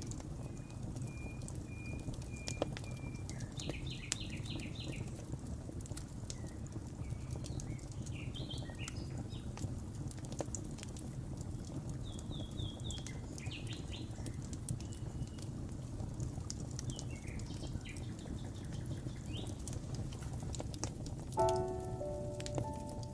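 Wood fire crackling over a steady low rumble, with songbirds chirping and trilling on and off throughout. Piano notes come in near the end.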